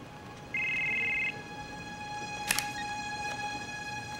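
A cell phone rings with one short, steady two-tone electronic burst lasting under a second. About a second later comes a sharp click as the flip phone is opened, over a faint sustained music drone.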